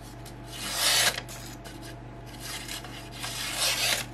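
A high-carbon steel Mastermyr forest knife slicing through a sheet of printer paper in two strokes: a short, louder swish about a second in, then a longer one near the end. It is a paper-cut sharpness test, and the edge proves decent.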